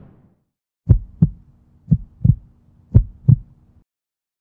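Heartbeat sound effect: three lub-dub double thumps, about one a second, over a faint low hum that cuts off just before the end. The fading tail of a boom is heard at the very start.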